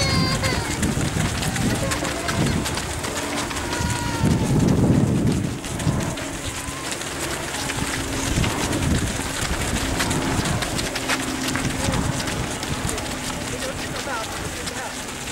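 Many runners' footsteps on a grass and gravel path, with voices murmuring among them as a large pack of race runners passes close by. The sound swells louder about four to five seconds in.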